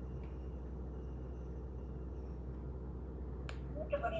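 Steady low electrical hum with faint background noise on an open call line, broken by one sharp click about three and a half seconds in. A voice begins just before the end.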